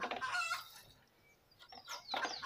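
Chicken clucking: a short run of calls at the start and brief falling calls near the end, with a quiet gap between.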